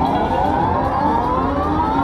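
Video slot machine's big-win rollup sound as the win meter counts up the credits: a loud sweep of several tones rising steadily in pitch together.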